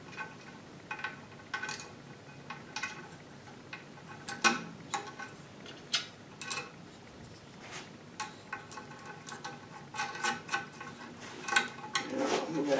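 Scattered light metallic clicks and clinks as a perforated steel strap clamp and its hex-head nut are handled and fitted over a log on an aluminium sled plate. The sharpest clicks come about four and a half and six seconds in.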